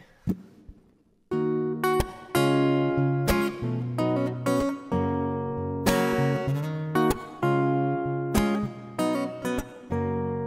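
Acoustic guitar strummed in a steady rhythm, starting about a second in, with each chord ringing on between strokes: the song's instrumental intro.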